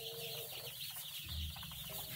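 A flock of dozens of day-old caipirão chicks peeping all at once, a dense, continuous high-pitched chorus of overlapping peeps.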